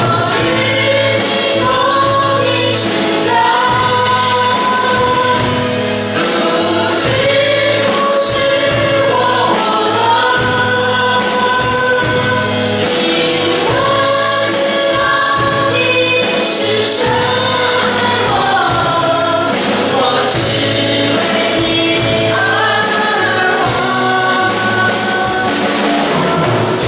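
A small mixed group of men and women singing a Chinese-language worship song in unison into microphones, over amplified accompaniment with a steady beat.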